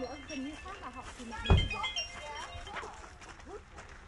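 Background voices of people talking, with a brief low thump about one and a half seconds in.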